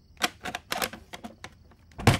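A quick, irregular run of sharp clicks and taps, about eight in a second and a half.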